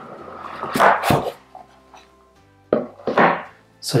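Cardboard product packaging handled and opened, the box slid out and its lid lifted, in two short rustling scrapes about a second in and about three seconds in, over faint background music.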